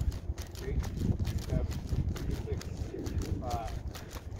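Rapid footfalls of a person doing quick-stepping sprint drills on dry dirt and grass, driving against a resistance-band speed harness.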